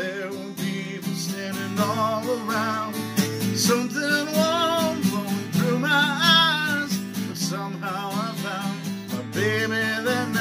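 A man singing to his own strummed steel-string acoustic guitar, a slow ballad. The guitar strums alone for the first couple of seconds, then the voice comes in with long, held phrases.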